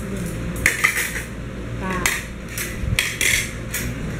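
Cutlery clinking and scraping against plates and glasses as people eat, several separate clinks spread through the moment.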